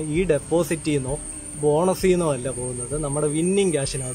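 A man talking continuously, with a thin, steady high-pitched whine behind his voice throughout.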